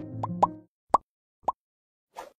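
Four short pop sound effects from an animated end card, spaced about half a second apart. The background music stops about two-thirds of a second in, after the first two pops.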